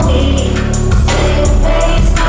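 Live concert performance of a pop song: sung vocals over a deep, bass-heavy backing with regular drum hits.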